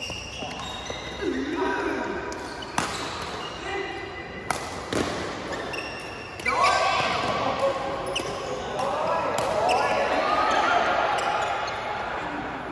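Badminton rackets striking shuttlecocks in rallies, sharp cracks about once a second with reverberation from a large hall. Court shoes squeak on the mat, and people's voices run through the second half.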